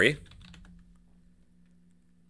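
Faint computer keyboard typing, a few light key clicks, over a steady low hum.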